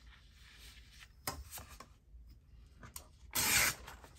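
Paper being handled over a cutting mat: light rustling, a small knock about a second in, then a loud half-second rip near the end as a printed paper piece is torn along a ruler.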